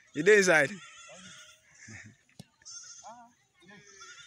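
A loud shout with a wavering, bleat-like pitch in the first second, then fainter short calls and a single sharp knock midway.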